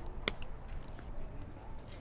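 A single sharp crack of a baseball impact about a quarter of a second in, over outdoor rumble and faint distant voices.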